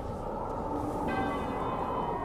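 A bell-like chime struck once about a second in, its tones ringing on steadily over a low murmur.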